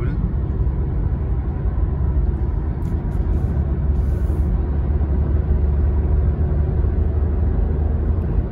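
Steady low road and engine rumble inside the cabin of a 2020 Honda City petrol sedan cruising on the highway at about 80 to 90 km/h while gently speeding up.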